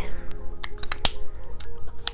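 Background music with soft, steady held notes, over which a few sharp clicks sound as art markers are handled on the paper and desk.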